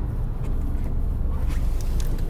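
Steady low rumble of a car driving, heard from inside the cabin: engine and road noise with a hiss over it.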